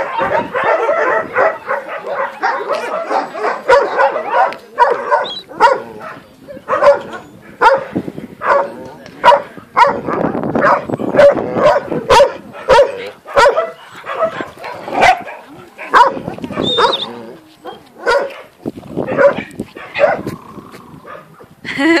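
Several dogs barking over and over, short sharp barks that overlap one another.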